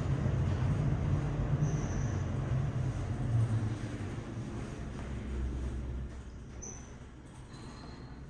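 Low rumble and rushing ride noise of a 1200 FPM ThyssenKrupp geared-traction high-rise elevator car travelling in its hoistway, fading away over the second half.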